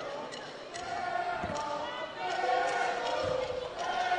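A basketball bouncing a few times on a hardwood court as it is dribbled at the free-throw line before a shot, in a large arena with crowd voices in the background.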